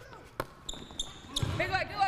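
Basketball being bounced on a gym floor during play, one sharp bounce early on, with short high sneaker squeaks and players' calls in the second half.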